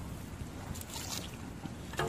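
Low, steady rumble of wind buffeting the microphone, with a few faint light knocks about a second in.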